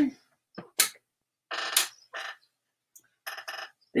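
Garments on plastic hangers being handled: short rustles of fabric and a few sharp clicks of hard plastic hangers knocking together.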